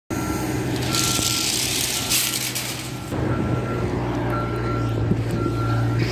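A steady low mechanical hum with a single high beep that sounds and stops about once a second, typical of a vehicle's reversing alarm, and a stretch of hiss in the first half.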